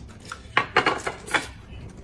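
Chopsticks clattering against a ceramic dish: a few short, sharp clinks about half a second, just under a second and about one and a third seconds in.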